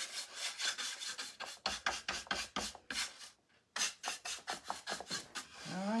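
A dry paint brush scrubbing back and forth over rough wooden planks in quick strokes, several a second, with a brief pause a little past the midpoint. This is dry brushing paint onto a weathered plank sign.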